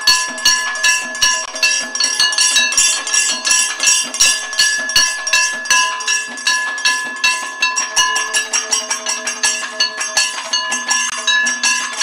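Kathakali percussion: chenda and maddalam drums struck in a fast, dense rhythm, over the steady ringing of the singers' chengila gong and ilathalam cymbals.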